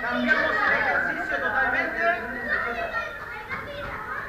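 Many children's and adults' voices chattering and calling out at once, overlapping throughout, with no single clear speaker.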